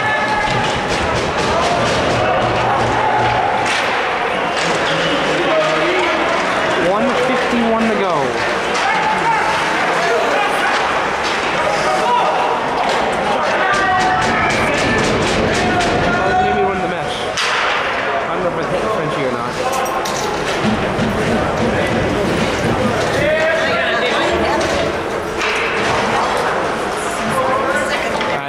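Indistinct voices calling out and echoing around an ice rink, with scattered sharp knocks like sticks and pucks hitting the ice and boards.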